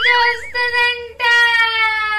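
A girl singing two long, held high notes on an open 'aah', with a short break about a second in. Each note sags slightly in pitch, and a wavering higher tone runs over the first half-second.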